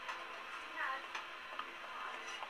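Metal pizza peel clicking against a pizza pan on the oven deck: a few light, sharp ticks about half a second apart, with faint talk in the background.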